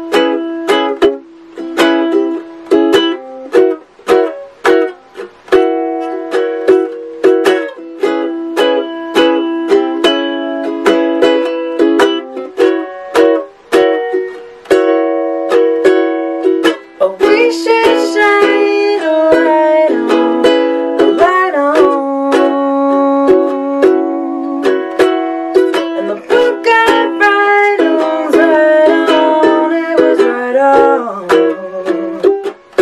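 Acoustic ukulele played solo, with single notes plucked in a steady, quick run of about three to four notes a second.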